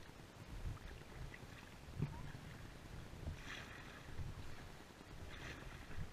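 Kayak paddle strokes: two watery splashes about two seconds apart in the second half, with a single knock about two seconds in, over a low wind rumble on the microphone.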